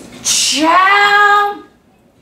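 A woman singing one held note. It opens with a breathy hiss, slides up in pitch and holds steady for about a second before stopping.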